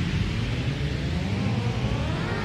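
Electronic dance track transition in a DJ mix: a white-noise sweep thins out over a low, steady bass drone. Faint rising synth tones begin near the end.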